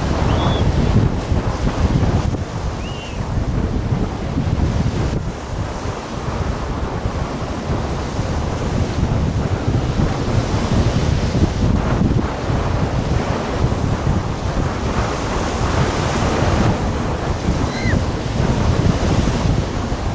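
Wind blowing hard across the microphone in uneven gusts, over the wash of a rough, choppy sea.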